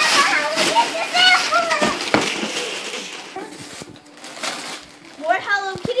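Wrapping paper rustling and tearing as a present is unwrapped, with a woman's voice and laughter in the first second or so.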